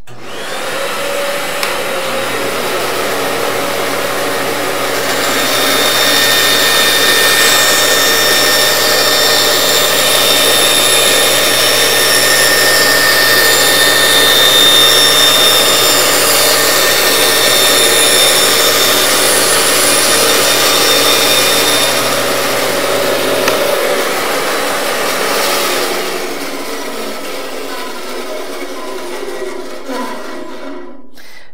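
Delta 14-inch bandsaw running and ripping along a pencil line in a straight board, a test cut to find the blade's drift. The cutting noise is loudest through the middle of the cut. Near the end the motor hum stops and the sound dies away as the saw is stopped with the blade still in the board.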